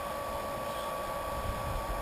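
Small electric wort pump running steadily with a thin, even whine, recirculating hot wort through a plate chiller at full flow, with cooling water rushing through the hoses and an uneven low rumble underneath.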